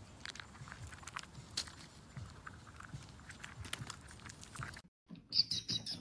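Faint scattered clicks and rustling as a chipmunk takes nuts from a hand and packs its cheek pouches. Near the end, after a brief silence, comes a quick run of high ticks, about six a second.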